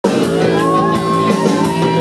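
Live rockabilly band playing, with electric guitar, upright bass and drums, and cymbal strokes about three times a second. A long, slightly wavering high note is held over the music from about half a second in.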